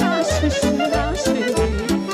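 Romanian folk dance music with a steady bass beat under a fast, ornamented lead melody.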